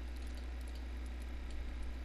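Steady low electrical hum and hiss from a desk microphone, with a few faint mouse clicks in the second half.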